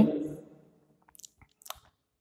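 A man's voice trails off at the end of a phrase, followed by a few faint, short clicks a little over a second in.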